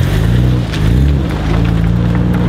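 Nissan Skyline R34 GT-R's RB26 twin-turbo straight-six running at low revs as the car rolls slowly past close by, its engine note dipping and rising slightly.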